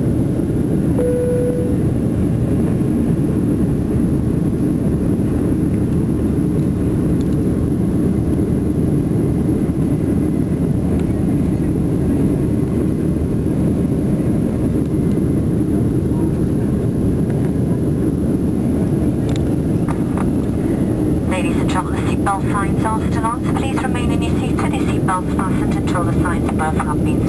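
Steady low rush of a jet airliner's cabin in flight, engine and airflow noise heard from a window seat. A brief single tone sounds about a second in, and a cabin-crew announcement over the PA begins about 21 seconds in.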